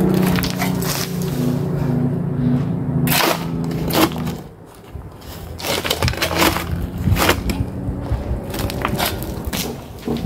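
Metal shovel blade scraping and crunching into stony soil and loose rock, several irregular strikes in the second half. A steady pitched hum underlies the first three seconds.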